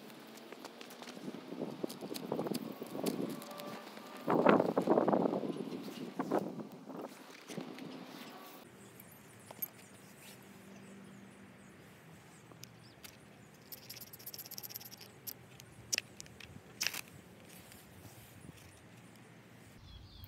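Rustling handling noise of dry grass tinder being gathered and packed around a cotton-wool pad in a bark fire base, loudest about four to five seconds in. After about eight seconds it gives way to a quiet outdoor background with a few faint clicks.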